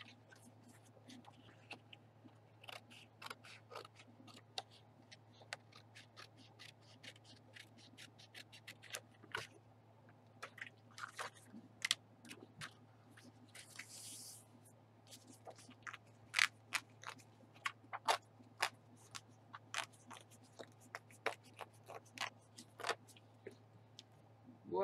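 Small red Paper Studio scissors snipping through patterned scrapbook paper in short, irregular cuts, the snips coming thicker and louder in the second half. A brief rustle of paper shifting comes about halfway through, over a steady low hum.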